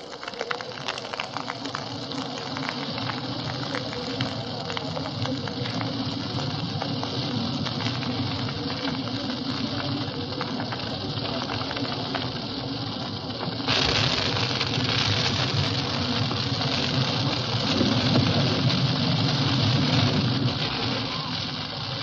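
A brushwood pyre burning, with steady crackling. About two-thirds of the way through, a sudden louder rushing whoosh as the flames flare up, and it keeps going.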